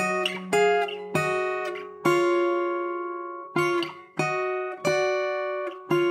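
Steel-string acoustic guitar in open D tuning, fingerpicked: a descending run of two-note thirds on the top strings, about ten plucks, several left to ring out and fade before the next.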